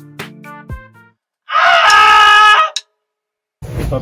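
An electronic track of synth notes over deep falling bass drops cuts off about a second in. After a short gap comes a loud, strained, sustained scream lasting just over a second, then silence until a drum kit starts near the end.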